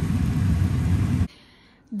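A steady low rumble, like a fan or small motor running, that cuts off abruptly just over a second in and leaves faint room tone.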